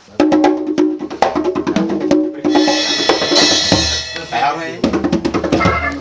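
Studio band playing a short loud burst: rapid drum kit hits on snare and bass drum over a held low note, with a cymbal wash about two and a half seconds in. Voices come in over the last couple of seconds.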